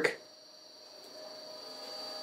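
CNC servo motors holding position against torque applied by hand to a lead screw, so that the motors have to do some work: a faint, steady whine of several high tones, growing louder about a second in.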